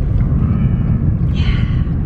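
Steady low road and engine rumble inside the cabin of a moving Lexus car, with a brief soft hiss about one and a half seconds in.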